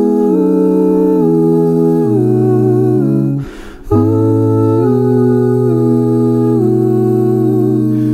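Male a cappella group humming sustained chords in close harmony, the bass line stepping down by degrees. About three and a half seconds in the chord breaks off for half a second with a short hiss, then comes back with a low bass note.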